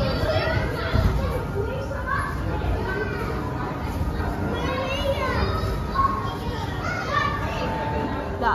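Children's high voices calling and shrieking at play, with several overlapping voices throughout, and a low thump about a second in.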